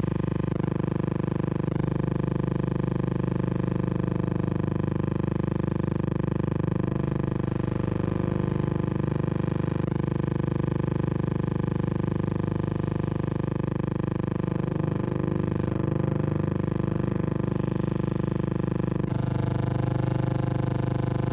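A steady, unchanging engine drone on an old newsreel soundtrack, holding one even pitch, with a slight change about a second before the end.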